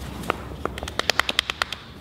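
A quick run of about a dozen sharp clicks, a few spaced out at first and then coming fast, lasting about a second and a half.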